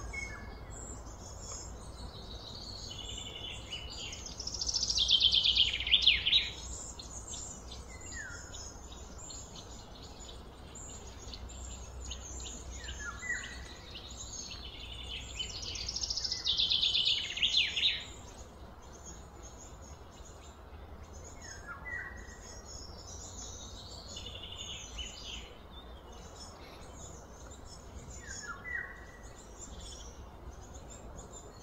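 Birds calling: two louder, rapid, high-pitched phrases about five and sixteen seconds in, a softer one later, and short falling notes every several seconds, over a steady low rumble.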